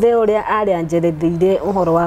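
Speech only: a woman talking steadily.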